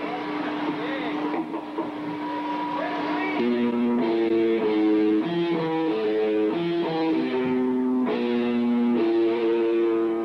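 Live hardcore punk band's electric guitar. It holds one note for about three seconds, then plays a riff of chords that change roughly every half second.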